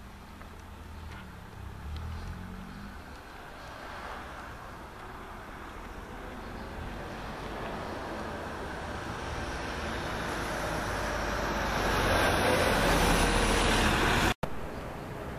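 A car approaching and passing on the road, its tyre and engine noise growing steadily louder, loudest near the end.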